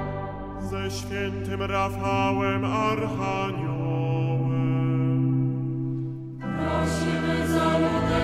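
Choir singing a Catholic chaplet in Polish, in slow, chant-like sustained chords. There is a short break about six and a half seconds in before the voices come back in.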